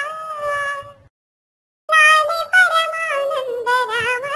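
Raised-pitch cartoon-cat singing voice of the Talking Tom app, singing a Telugu lullaby. A held note fades out in the first second, there is a short complete silence, and the singing starts again about two seconds in.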